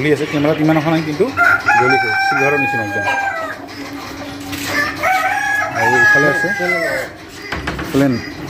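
A rooster crowing twice, each crow a long held call of about two seconds, the first starting about a second and a half in and the second near the five-second mark. Chickens cluck at the start.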